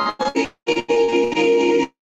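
Electronic keyboard playing sustained, organ-like chords over a Zoom call. The sound cuts out briefly about half a second in and again near the end.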